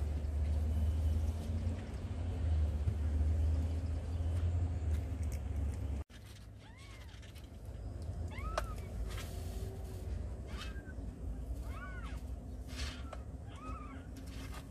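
A cat meowing in short calls that rise and fall, about six of them in the second half, with a few soft clicks between. Before that, a low rumble runs until it cuts off suddenly about six seconds in.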